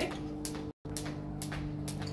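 Jump rope ticking sharply against a concrete floor with each turn, roughly twice a second, over background music holding a steady chord. The sound cuts out completely for an instant a little before the middle.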